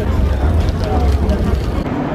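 Steady low rumble under faint background chatter, cutting off suddenly near the end.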